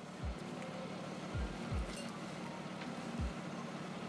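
Jaguar XJ6 straight-six engine idling steadily just after a cold start, with a few soft low thumps through it.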